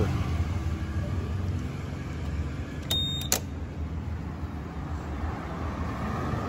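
Steady low idle of a Honda PCX 160 scooter's single-cylinder 160 cc engine. About three seconds in there is a short high tone framed by two sharp clicks.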